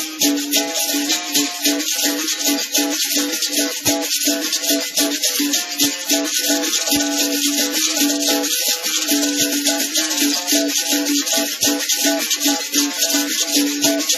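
Two berimbaus, steel-strung musical bows with gourd resonators, struck with sticks and played together with caxixi basket rattles, in a steady capoeira rhythm. A repeated buzzing note keeps returning under the constant shake of the rattles.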